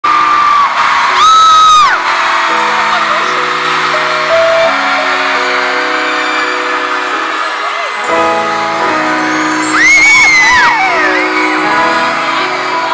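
Live keyboard playing slow, sustained chords in an arena, with shrill fan screams rising over it twice: about a second in and again near ten seconds.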